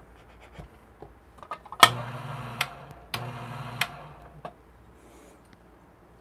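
Electric Niche coffee grinder's motor switched on in two short runs, about a second and just under a second long, each begun and ended with a sharp click. Light rubbing and scraping of the grinder's lid and dosing cup comes in between.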